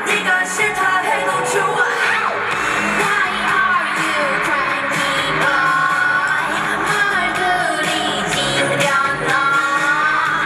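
K-pop girl group song performed on stage: female voices singing over a loud pop backing track with a steady beat.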